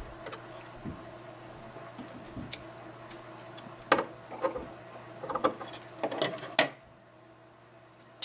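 Small scissors snipping thread ends off a small sewn fabric piece, with the fabric being handled. There is one sharp snip about four seconds in, then a few lighter clicks and rustles.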